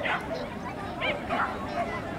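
Norfolk terrier barking in a few short, high yips as it runs an agility course.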